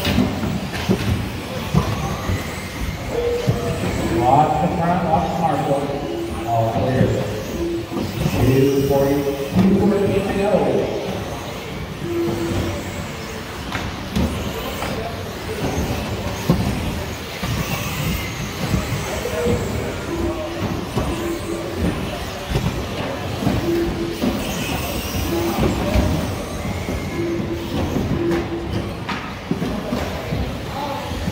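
Muffled, indistinct speech over a PA in a large indoor hall, mixed with the continuous running noise of electric 1/10-scale 2wd RC buggies racing on the track.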